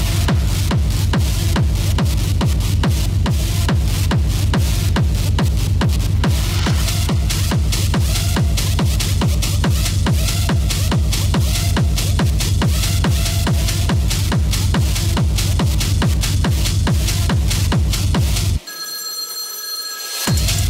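Techno music with a steady driving kick drum and heavy bass that come in at the start after a quieter build-up. Near the end the kick and bass cut out for about a second and a half, leaving a high ringing tone, before the beat returns.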